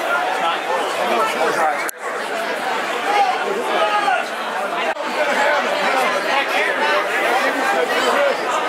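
Many people talking at once in a large hall: a dense, overlapping crowd chatter, with two brief dropouts about two and five seconds in.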